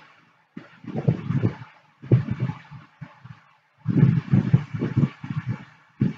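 A man's voice talking in short phrases with pauses between them; no other sound.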